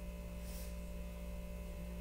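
Steady low electrical hum, with a brief soft hiss about half a second in.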